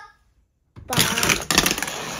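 Small Monster Jam Minis toy monster trucks clattering and rattling as they race down a plastic track, starting abruptly under a second in.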